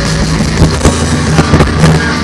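Loud live rock band playing electric and acoustic guitars over a drum kit, with drum hits through the steady guitar chords.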